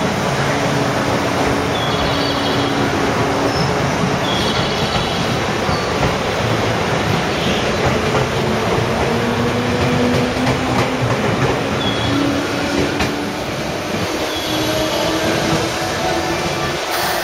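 JR West 221 series electric train pulling out and gathering speed: steady rolling and running noise from the cars, with a low hum that rises slowly in pitch as it speeds up. A few short high squeals, likely from the wheels, come now and then.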